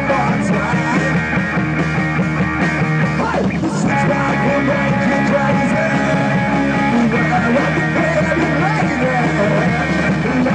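Live rock band playing: two electric guitars over a drum kit, loud and steady, with a downward-sliding note about three and a half seconds in.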